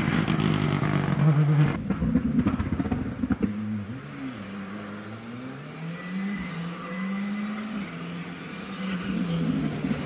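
Rally car engine at full throttle, then a run of sharp cracks and bangs from the exhaust about two seconds in as the car lifts off and fades around the bend. A second rally car is then heard further off, its engine note rising and falling through the bends and growing louder near the end as it approaches.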